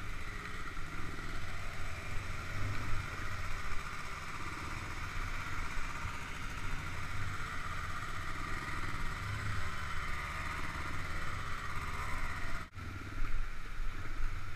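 ATV engine running steadily as the quad rides a bumpy dirt trail. The sound cuts out for an instant near the end.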